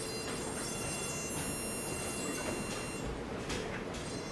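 Synthesized tone from a Pure Data patch playing over the hall's speakers, a thin buzzy high tone that drops out briefly near the end, with a few soft clicks.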